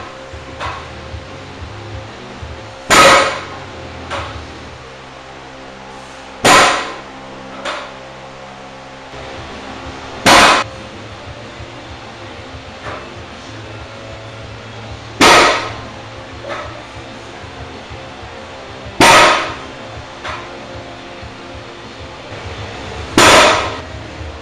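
Iron-plate-loaded barbell set down hard on a plywood platform after each dead-stop deadlift rep: six loud clanging impacts, roughly four seconds apart, each followed about a second later by a smaller knock.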